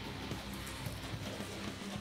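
Quiet background music with steady low sustained notes.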